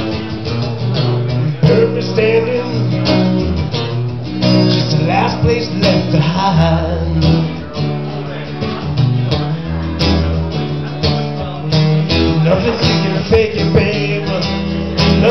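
Acoustic guitar strummed in a steady rhythm, playing chords.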